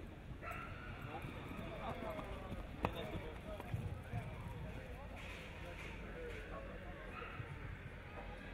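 Faint murmur of a crowd of spectators talking, with one sharp click a little under three seconds in.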